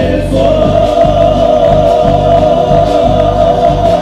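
Live band with several male voices singing in harmony, holding one long note from shortly after the start to the end, over guitars and low accompaniment.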